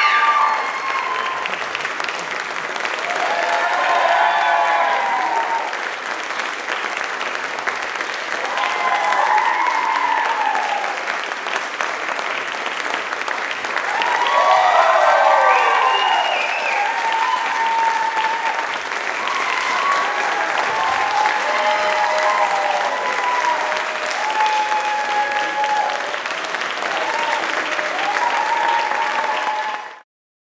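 Audience applauding steadily, with voices calling out and whooping over the clapping. The sound cuts off abruptly at the end.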